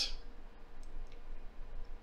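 A few faint, sharp clicks over a low steady room hum.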